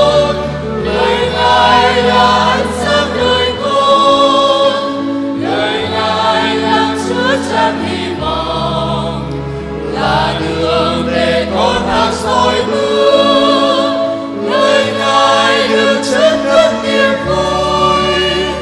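Church choir singing a hymn over instrumental accompaniment, with sustained bass notes that change every couple of seconds.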